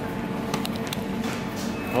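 Steady background hum of a large supermarket, with a few faint taps and rustles as a cardboard pastry box is handled.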